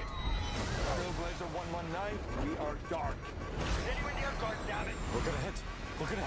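Film trailer soundtrack: a man's voice calling 'Mayday, mayday, mayday' and shouts of 'We're gonna hit', over a steady low rumble of an airliner in trouble.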